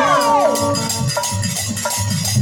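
Bhojpuri folk stage music: a voice finishes a sung note sliding down in pitch about half a second in. Steady clinking of small hand cymbals and thuds of a dholak hand drum run under it, and a melody instrument holds steady notes from just past a second in.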